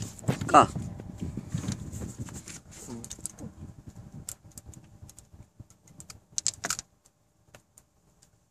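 Rumbling handling noise with scattered sharp clicks, fading out about seven seconds in. A cluster of louder clicks comes just before the noise stops.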